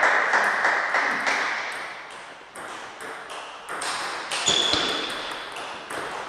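Table tennis balls clicking off bats and tables in a sports hall, with a rally getting under way in the second half. Over the first two seconds a broad rush of noise fades away, and about four and a half seconds in there is a brief high squeak.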